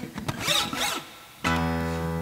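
Acoustic guitar: scratchy noises of the hand rubbing and sliding on the strings, then about a second and a half in a chord strummed and left ringing.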